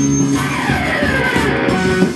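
Electric guitar music: held notes, with a high note gliding down in pitch from about half a second in.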